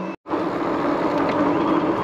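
Fat-tyre mid-drive electric bike being ridden on a gravel track: steady tyre and wind noise with a steady low hum underneath. The sound drops out completely for a moment just after the start, then runs on evenly.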